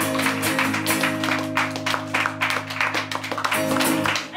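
Acoustic guitar strummed through the closing chords of a song, a held chord ringing under quick strokes until it stops at the very end.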